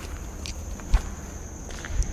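Footsteps on bare ground, with a sharp thump about a second in, the loudest sound, and a smaller one near the end. A steady high-pitched whine runs underneath.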